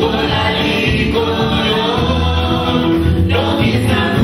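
Live band music, loud and steady, with several voices singing together over a strong bass line.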